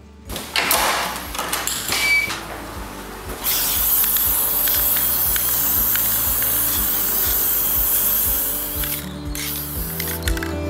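Aerosol spray paint can spraying: a long steady hiss from about three and a half seconds in, breaking off briefly near the end and starting again. Before it, a run of short clicks and rattles; background music plays throughout.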